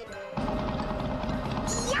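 Cartoon sound effect: a rapid rattling rumble lasting about a second and a half, under a held note of background music.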